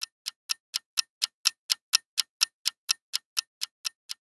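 Ticking-clock sound effect: a steady, even tick, about four ticks a second.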